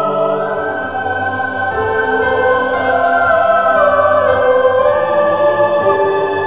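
Music: a choir holding long chords that change slowly, the voices sliding from note to note.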